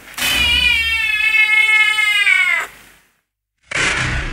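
A long, drawn-out cat yowl lasting about two and a half seconds, its pitch sagging at the end before it cuts off. After a brief gap, a loud rush of noise starts near the end.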